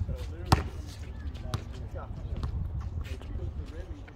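Basketball bouncing on an outdoor concrete court: one sharp, loud bounce about half a second in, then a few softer thuds, with players' voices in the background.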